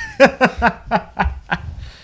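A man laughing: a quick run of short chuckles that dies away near the end.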